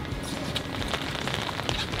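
Rain falling on the boat and on the wet rain gear: a steady noise scattered with small ticks of drops, over wind and sea noise.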